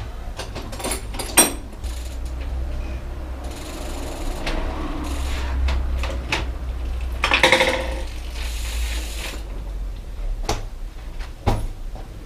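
Bicycle drivetrain turned by hand in a repair stand after the chain has been tensioned: the chain runs over the sprockets and the freewheel ratchets, with scattered clicks and rasping stretches, the loudest about seven seconds in, over a steady low hum.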